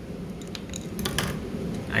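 Scissors cutting a flattened drinking straw in half, a few sharp snips about a second in.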